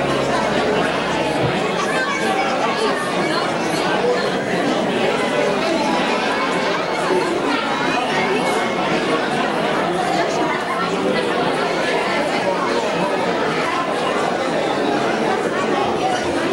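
Crowd chatter in a large room: many people talking at once, overlapping voices as they greet one another.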